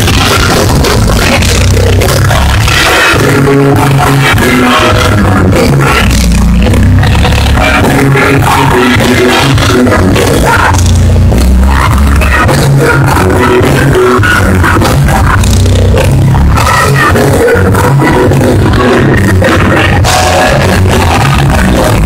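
Live church worship music from a band and singers, loud throughout with heavy bass.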